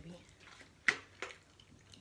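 Two sharp plastic clicks about a third of a second apart, the first much louder, as the cap is twisted off a plastic water jug.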